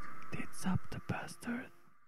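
A whispered voice over a faint held tone at the close of a melodic death metal track. The voice stops shortly before the end and the sound fades away.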